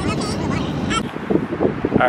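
Background music with a vocal line over steady car road noise, cutting about a second in to gusty wind buffeting the microphone outdoors, with voices faintly under it.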